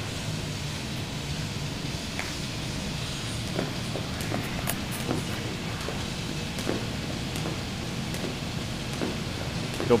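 A jump rope ticking against a rubber-matted gym floor with light landings from the jumps. The clicks are sparse at first and quicken a few seconds in to about three a second, over a steady low hum.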